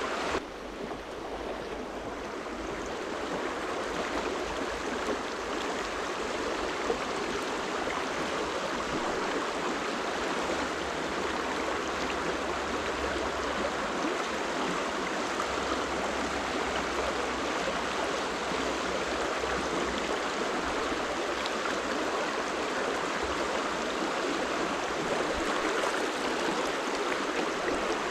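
Shallow stream running fast over a stony bed, a steady rushing and babbling of water.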